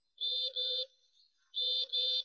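Bus horn sound effect beeping in pairs: two short beeps, a pause, then two more, each beep an even, steady tone.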